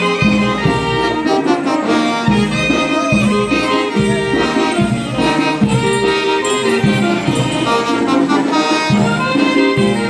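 Live traditional Andean band playing negrería dance music: a melody over a steady drum beat of a little more than one stroke a second.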